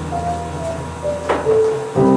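Piano introduction to a slow ballad beginning: a held low bass note under a few soft single melody notes, with a short knock just over a second in.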